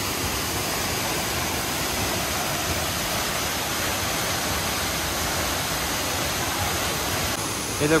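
A waterfall plunging into its rock pool, heard as a steady, even rush of falling water.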